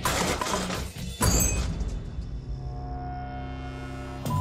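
A freshly quenched steel sword blade striking a wooden board: a hit at the start, then about a second in a louder sharp crack with a high ring as the brittle blade shatters into pieces. Dramatic music with long held tones follows.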